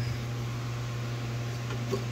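A steady low hum with a faint even hiss, the constant background drone of a running machine; nothing else stands out.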